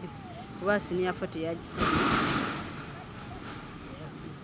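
A sudden burst of hissing from a road vehicle about two seconds in, lasting about a second and then fading away.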